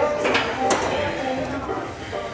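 A voice without clear words over background music, with two short sharp clicks in the first second.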